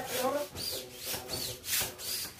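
Foil party balloons crinkling and rustling as they are unfolded and handled, in a few irregular swishes.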